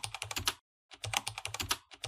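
Computer keyboard typing sound effect: rapid runs of key clicks, with a brief pause a little after half a second in.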